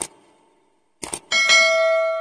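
Subscribe-animation sound effects: a sharp mouse click, then a quick double click about a second in. A notification bell chime follows, the loudest sound, ringing on with several steady tones.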